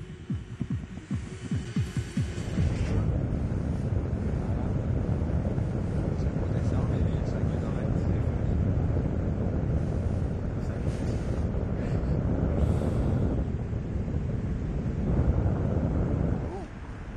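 A music track with a regular pulsing beat for the first couple of seconds, then steady wind rushing over the microphone, loud and low, until it drops off at the end.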